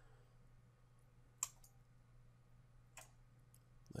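Near silence: room tone with a low steady hum, broken by two single clicks of a computer mouse about a second and a half apart.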